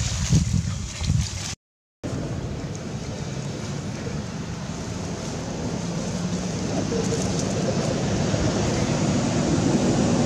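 A steady rushing noise that slowly grows louder, following a few scattered clicks and a brief dropout about two seconds in.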